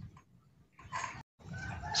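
A short animal call heard once, about a second in, during a quiet pause.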